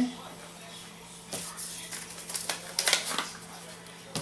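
A small paper seed packet rustling and crinkling as it is picked up and handled: a quick run of crisp paper clicks and rustles from about a second in, lasting roughly two seconds.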